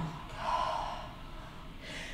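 A woman's long audible exhale through the mouth, swelling briefly and fading out over about a second, breathing out as she moves into downward-facing dog.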